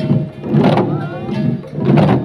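A troupe of long Garo dama drums beaten together in a steady marching rhythm, heavy strikes coming about every half second or so, with voices calling over them.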